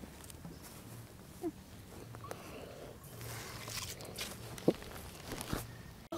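Quiet rural outdoor ambience with faint, scattered footsteps and light knocks on a dirt path.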